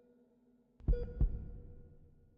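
Heartbeat sound effect: a double low thump, lub-dub, about a second in, over a steady low hum.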